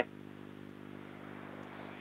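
Faint, steady hum with a light hiss on a telephone line, heard in a pause between a caller's sentences.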